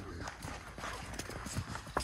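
Footsteps on a damp sand track: a run of soft, irregular steps, each a short scuffing click.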